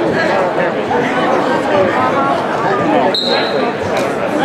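Many voices talking at once in a crowded gymnasium, a steady babble of spectators. A little after three seconds in, a brief high steady tone cuts through, like a short whistle.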